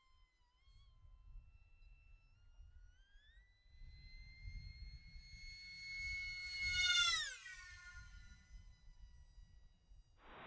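Electric FPV wing (ZOHD Dart V2) with a 2507 brushless motor and a 5-inch two-blade prop, whining high overhead. The pitch rises as the throttle comes up about three seconds in. About seven seconds in it makes a fast pass, loudest as it goes by, and the pitch drops sharply as it passes and fades away.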